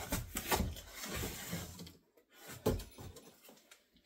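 Cardboard scraping and knocking as a smaller box is pulled out of a large cardboard shipping box, with one sharper knock about two and a half seconds in, then faint handling.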